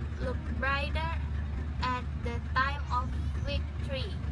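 A young woman speaking in short phrases that the recogniser did not catch, over a steady low rumble.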